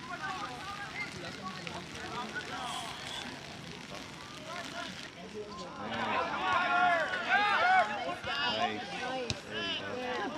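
Voices of spectators and players calling out at an outdoor soccer game: faint mixed chatter at first, then louder overlapping shouts from about halfway through.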